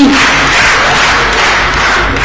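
An audience in a large hall applauding, the clapping slowly dying down.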